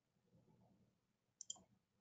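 Near silence: room tone, with two faint quick clicks in close succession about a second and a half in.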